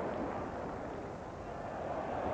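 Football stadium crowd noise, a steady wash of many voices that eases a little before picking up again.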